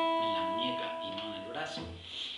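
A single note on an archtop guitar rings on after a run of evenly picked strokes and slowly dies away, with a man's voice talking quietly over it.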